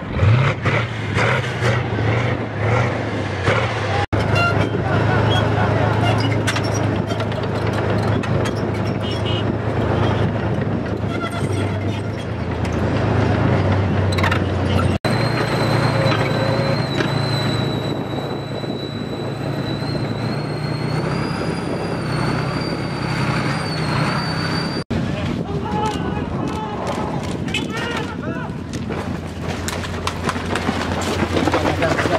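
Heavy military vehicles running, a tank's engine among them, a steady low rumble broken by a few abrupt cuts. In the middle stretch, while the tank drives, a high whine rises in steps.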